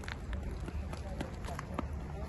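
Wind rumbling on the phone microphone outdoors, with faint voices and a few short sharp clicks.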